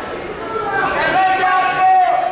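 Several voices calling out and talking across a large gym hall, with one call held for about a second near the end: coaches and spectators shouting during a wrestling bout.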